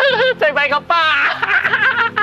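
A man laughing heartily, over soft background music.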